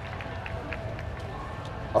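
Outdoor crowd ambience between announcements: a steady low rumble with faint indistinct voices and a few small clicks from the seated audience.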